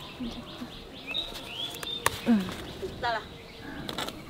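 Birds chirping around a garden: short gliding chirps and a quick falling call about three seconds in. A few faint snatches of voice and a single sharp click come about two seconds in.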